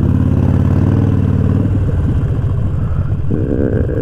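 Harley-Davidson Sportster XL1200's air-cooled V-twin with Vance & Hines pipes at low speed: a steady low-rev note for the first second and a half or so, then it breaks into an uneven, loping beat as the throttle is rolled off.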